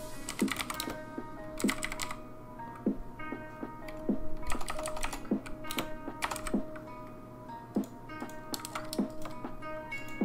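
Typing on a computer keyboard in quick clusters of keystrokes, over background music with steady held tones and a soft beat about every second.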